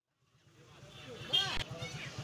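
Street ambience fading in: an engine running with a steady rapid pulse, about ten beats a second, under voices.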